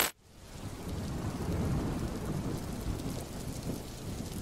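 A low, steady rumbling noise like thunder with rain. It fades in from a brief silence during the first second and holds steady.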